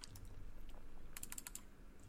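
Faint computer keyboard keystrokes while a link is pasted into a web browser: a few single taps, then a quick run of several keys a little past halfway.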